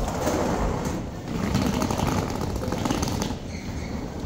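Wheels of a rolling suitcase running over a hard terminal floor with a fast rattle, amid footsteps and the general noise of a large hall.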